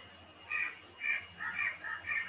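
A bird calling in the background: a run of short calls, about two a second, starting about half a second in.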